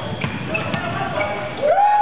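A basketball being dribbled on a gym floor amid spectator chatter, with short knocks of the ball and players' feet, and a man's voice starting near the end.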